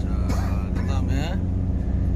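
A boat engine running steadily with an even low drone, under a few murmured words.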